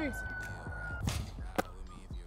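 Football throwing machine firing a ball. A steady high whine cuts off about a second in with a loud, short burst of noise as the ball is launched, and a sharp smack follows about half a second later.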